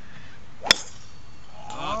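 A golf driver striking the ball off a tee: a single sharp metallic crack about two-thirds of a second in.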